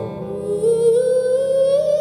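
A woman's wordless vocal, a long held note that glides slowly upward, over a sustained low instrumental drone.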